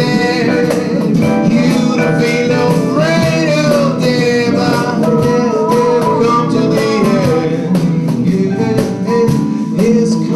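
A man singing a song while playing an electric guitar.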